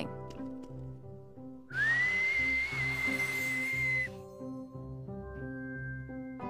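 A single held whistle, gliding quickly up at the start and then holding one steady pitch for about two seconds before stopping, over soft background music. It is a whistle aimed at a cup of drink to change its flavour.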